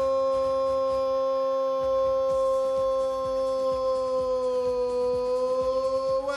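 Brazilian football commentator's long drawn-out goal cry, the vowel of "Gol!" held on one steady, loud note.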